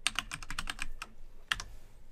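Typing on a computer keyboard: a quick run of about ten keystrokes, then a pause and a single louder click about a second and a half in.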